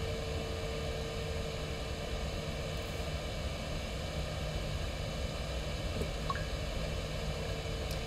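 Steady background hiss and hum of a small room, with a faint steady tone that fades out about three seconds in and a couple of faint small clicks around six seconds, from handling plastic parts.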